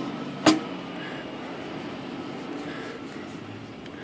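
One sharp click or knock about half a second in, as the rubber power roller and parts of an IBM C model electric typewriter are handled, over a steady low background noise.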